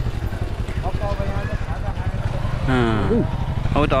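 Motorcycle engine idling with a steady, rapid low pulsing, with voices talking over it.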